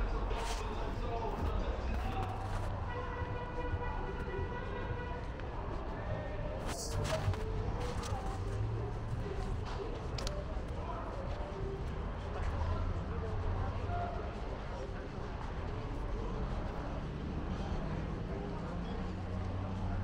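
Busy city street ambience: indistinct voices of people on the sidewalk and passing traffic over a steady low rumble. A held tone sounds for about two seconds a few seconds in, and a couple of sharp clicks come a little later.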